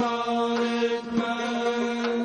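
Azerbaijani mugham performance: a voice holds a long steady note over the ensemble of tar and gaval frame drums, with a sharp stroke about a second in.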